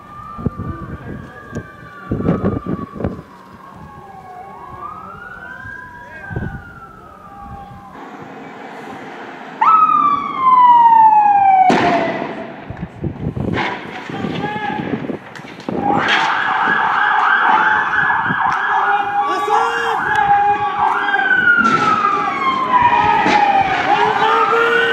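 Police vehicle sirens wailing, the pitch slowly sweeping up and down. About ten seconds in, a louder siren sweeps down in pitch. From about sixteen seconds a fast warbling siren joins in, with a few sharp bangs scattered among the sirens.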